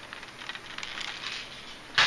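Plastic lure packaging rustling and crinkling as it is handled, with faint scattered ticks and crackles.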